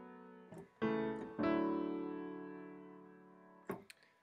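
Grand piano patch on an EXS24 sampler in MainStage, played from a keyboard: a held chord fades away, then fresh chords are struck about a second in and ring out, fading slowly.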